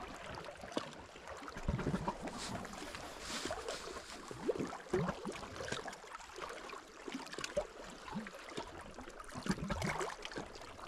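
Small sea waves lapping and sloshing against shore rocks, with irregular little splashes.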